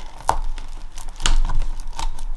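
Crinkling of paper and clear sticker sheets as stickers are worked onto a scrapbook page, with a few sharp taps and a louder soft knock a little past the middle.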